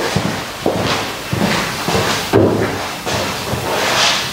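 Footsteps on a hard floor, a step about every half to two-thirds of a second, with dull thuds.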